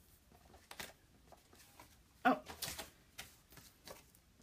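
Cardstock and papers being handled and shuffled on a tabletop: scattered light rustles and taps, with a louder paper rustle about two and a half seconds in, just after a brief murmur of voice.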